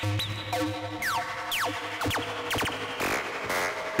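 Eurorack modular synthesizer patch playing: a steady pitched drone through a filter whose cutoff is modulated by an XAOC Devices Batumi LFO, with quick falling sweeps roughly twice a second over a gritty layer of bit-crushed white noise.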